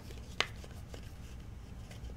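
Faint handling of a baseball card and a clear plastic card sleeve, with one sharp click about half a second in and a few softer ticks over a low steady hum.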